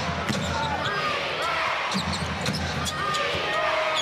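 Basketball dribbled on a hardwood arena court, with sharp ball bounces over a steady arena crowd noise.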